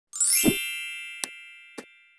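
Logo intro sound effect: a bright chime with a low thud rings out and slowly fades. Two short clicks come through the fade, a little past a second in and near the end.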